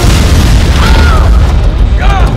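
Movie explosion sound effect: a sudden loud blast at the start, then a sustained deep rumbling roar.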